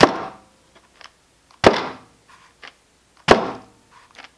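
A 1/16 Traxxas Slash 4x4 VXL RC truck dropped a couple of inches onto a workbench three times, about a second and a half apart. Each landing is a sharp knock as the front end bottoms out and the chassis hits the table, because the front shocks are still short of oil. There are light clicks between the drops.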